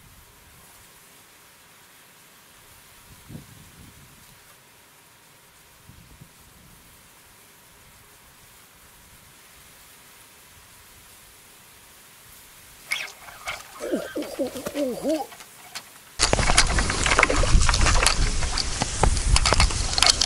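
A goat bleating in a few wavering calls about thirteen seconds in, over faint outdoor background. At about sixteen seconds a sudden loud rush of wind buffeting the microphone takes over and is the loudest sound.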